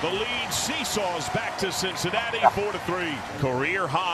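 A TV broadcast announcer calling a home run over the steady noise of a ballpark crowd, quieter than the voice-over around it.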